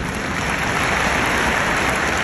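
Arena crowd applauding, a dense, even wash of clapping that swells slightly.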